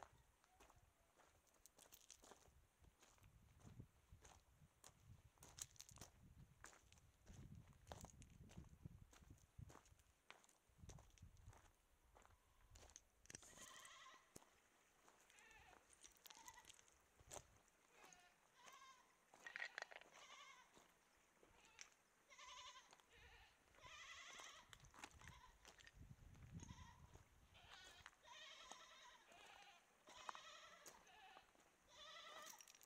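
Faint footsteps crunching on loose gravel. From about halfway through, goats bleat repeatedly, wavering calls coming every second or two.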